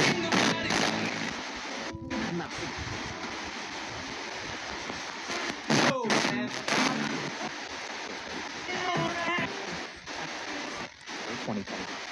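S-Box spirit box scanner sweeping through radio stations: a continuous hiss of static broken by short loud bursts and brief chopped-up snatches of radio voices.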